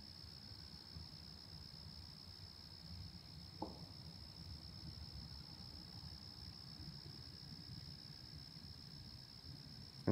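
Faint, steady, high-pitched chirring of crickets, with a low rumble underneath and one brief short sound about three and a half seconds in.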